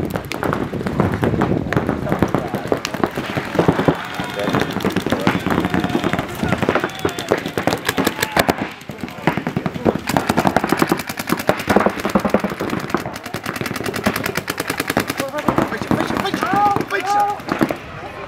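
Paintball markers firing in rapid, near-continuous strings of shots, with voices shouting over the gunfire.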